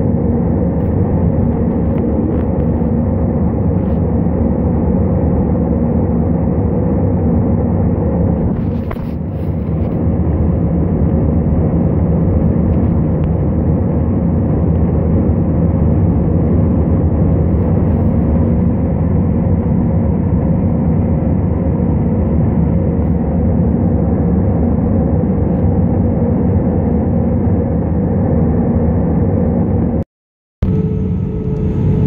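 Steady cabin drone of a jet airliner in flight, engine and airflow noise with a low, even hum, dipping slightly for a moment about nine seconds in.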